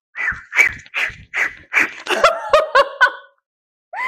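A woman laughing hard in a run of rhythmic bursts, about two a second, turning into higher-pitched squeals and cutting off suddenly just past three seconds.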